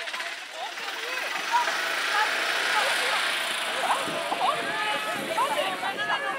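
Distant calls and shouts from players and people along the sideline of an outdoor soccer game, over a rushing noise that swells in the middle and eases toward the end.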